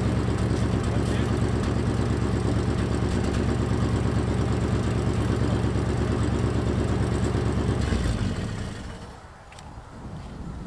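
1940 Cadillac Series 72's flathead V8 running steadily in gear, turning the jacked-up rear wheels to break loose a clutch disc stuck to the flywheel after years parked in first gear. The engine sound dies away about eight seconds in.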